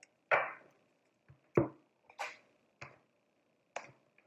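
Tarot cards shuffled by hand and stacks of the deck set down on a wooden tabletop: about six separate short slaps, a fraction of a second to a second apart.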